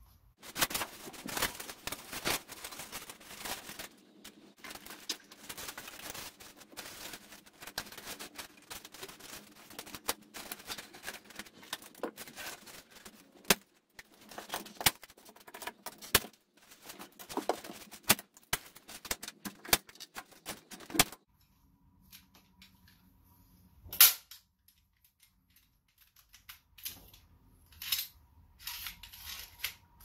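Hand-operated staple gun firing staples into wooden rafters: a series of loud, sharp snaps a few seconds apart. Between them, and denser in the first part, comes crackling and rustling as a rigid plastic attic baffle is handled and pressed into place.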